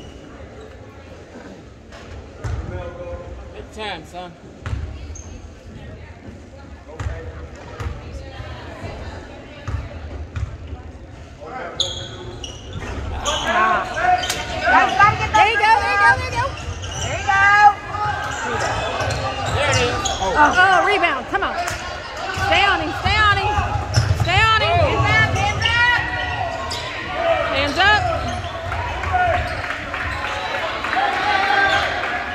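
A basketball bouncing on a gym's hardwood floor, with scattered knocks in a quieter lull, then from about twelve seconds in, live play: dribbling thuds with many short, sharp sneaker squeaks, echoing in the large gym.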